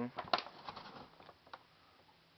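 A few light taps and rustles from a hand handling a cardboard-and-plastic firework box, dying away about a second and a half in.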